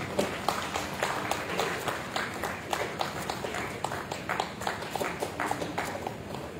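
Scattered applause from an audience, individual hand claps heard separately and irregularly, several a second.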